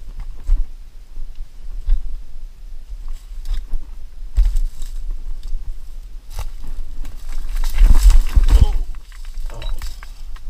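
Footsteps and scrambling through dry brush and loose stones: twigs crackle and stones knock and crunch, over a low rumble of camera handling. The loudest, roughest stretch comes about eight seconds in.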